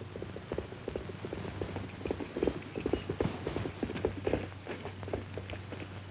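Horse hooves clopping irregularly on the ground, a run of short uneven knocks, over the steady hum of an old film soundtrack.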